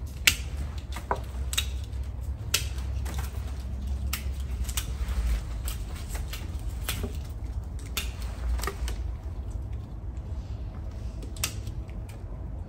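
Hand pruning secateurs snipping cedar branches: a series of sharp clicks at irregular gaps of about half a second to a few seconds, with a steady low hum underneath.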